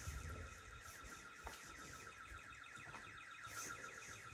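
A building's alarm sounding faintly and continuously as a steady high tone with a fast pulsing warble over it, set off by people entering the building.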